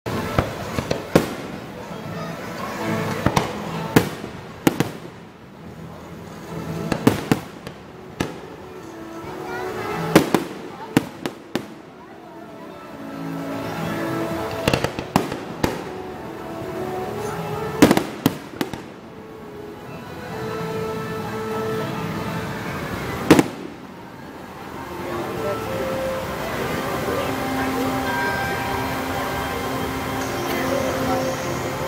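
Fireworks display: aerial shells bursting with sharp bangs at irregular intervals, some in quick clusters, the last loud one about three-quarters of the way through. Voices run underneath and fill the end once the bangs stop.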